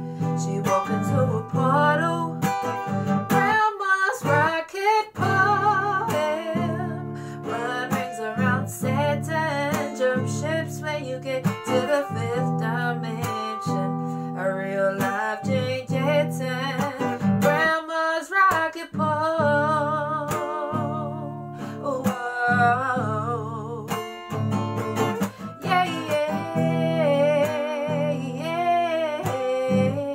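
A woman singing to her own strummed acoustic guitar, her voice wavering on held notes over steady chords.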